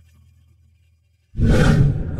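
A faint low hum, then a sudden loud rushing burst about a second and a half in that dies away over about a second.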